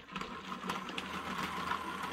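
Hornby OO-gauge model train running on the track, its small electric motor giving a steady hum with faint ticks from the wheels on the rails. It starts at once.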